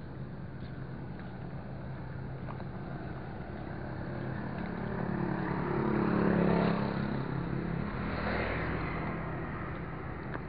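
A motor vehicle passing close by: its engine noise builds to a peak about six and a half seconds in and then fades, over a steady low engine hum.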